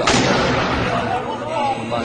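A mortar firing: one sharp blast right at the start that dies away over about a second.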